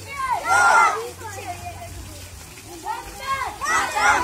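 A group of children's voices shouting together, in two loud bursts: one about half a second in and another near the end, with quieter talk between.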